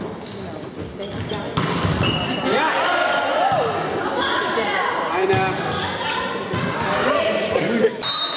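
Volleyball rally in a sports hall: players shouting and calling to each other, with several sharp smacks of the ball being hit, echoing in the hall.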